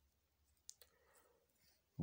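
Near silence, with one faint short click about two-thirds of a second in.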